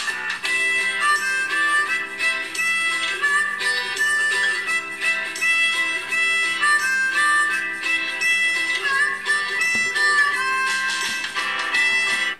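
Music with a melody over guitar accompaniment, played back through a smartphone's built-in loudspeaker in a speaker comparison test.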